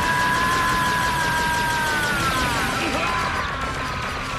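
Animated-series soundtrack of music and effects: a held high chord of several tones that sags slightly in pitch after about two seconds, over a dense noisy rumble.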